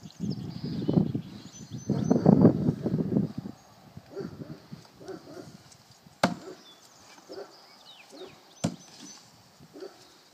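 Two throwing knives striking the wooden target board, sharp single impacts about six and eight and a half seconds in. Before them, a louder muffled low rumble lasts through the first three seconds.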